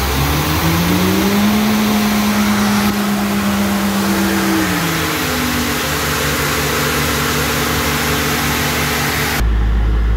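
Diesel engine of an AirMan portable air compressor speeding up as it is switched onto load, holding high for a few seconds, then dropping back to a lower steady speed as the compressor regulates its RPM to air pressure; the engine speed has just been adjusted to cure a low-engine-RPM fault. Near the end the sound abruptly turns duller and deeper.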